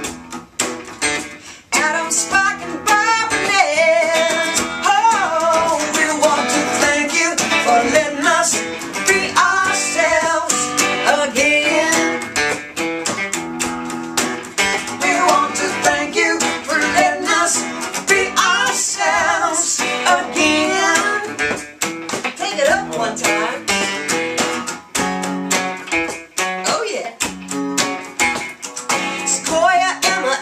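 Archtop acoustic guitar strummed steadily, accompanying a man and a woman singing a country-style song together.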